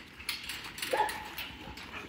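A dog in a kennel pen gives one short, faint whine about a second in, over a low background of faint rustling.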